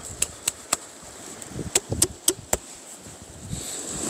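A glass soju bottle slapped and tapped by hand before opening: sharp clicks, three in quick succession in the first second and four more around two seconds in. Near the end, the liquid sloshes as the bottle is shaken and swirled to spin a vortex inside it.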